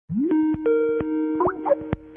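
Incoming-call ringtone of a video-call app: a short, bubbly melody of plucked-sounding notes that opens with a rising glide and repeats about every two seconds.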